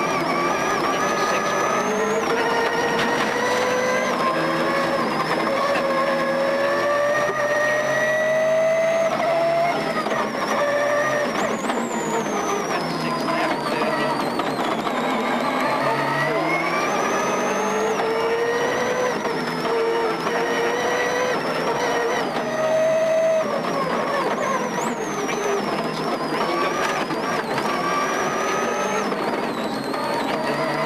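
Turbocharged flat-four engine of a Subaru rally car heard from inside the cockpit at full stage pace. It pulls up in pitch in long climbs, drops sharply about twelve seconds in and again near the three-quarter mark as the driver lifts and shifts, then climbs again.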